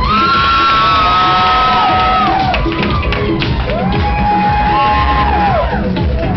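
Loud dance music with a steady beat, over which audience members whoop in two long held cries that rise into a note and fall away, the first lasting about two and a half seconds and the second starting near the middle.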